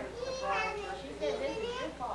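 A child's high-pitched voice in two long, drawn-out phrases.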